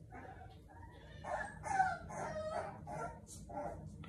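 A four-week-old bully puppy crying out in a run of high, wavering cries, starting about a second in and loudest about two seconds in, while it is dosed with dewormer.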